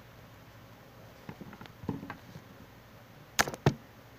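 Small plastic toy figures being handled and set down in a pile: a few light taps and clicks, then two sharp plastic clacks about a third of a second apart near the end.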